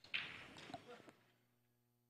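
Billiard balls clacking together on a pool table: one sharp clack with an echoing tail just after the start, then a fainter knock about a second in.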